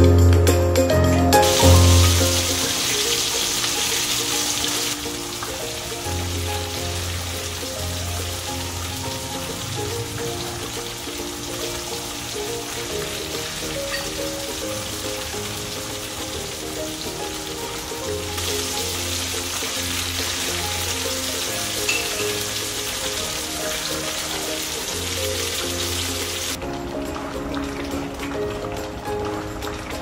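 Food sizzling as it stir-fries in oil in a stainless saucepan, under steady background music. The sizzle starts about a second and a half in, is strongest near the start and again in the second half, and stops a few seconds before the end.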